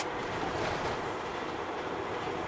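Steady in-cab running noise of a MAN TGE van's 2.0-litre diesel engine and tyres on the road while driving, with one short sharp click right at the start.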